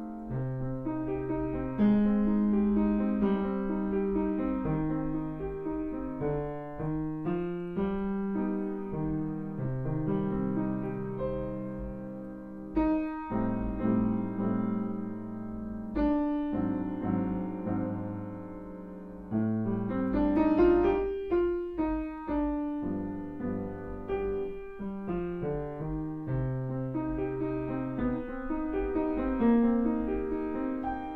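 Grand piano played solo: a piece in C minor, with chords and a moving left-hand line, and a run climbing up the keyboard about twenty seconds in.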